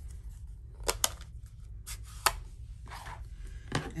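A few sharp plastic clicks and taps, the strongest about two seconds in, as a stamping ink pad's plastic case is handled and opened.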